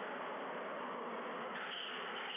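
Steady, even hiss of background room noise, with no ball strikes or footsteps standing out.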